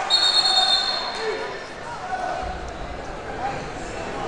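A referee's whistle blown once, a shrill steady note lasting about a second, signalling a stoppage in the wrestling bout. Crowd voices carry on underneath in the gym.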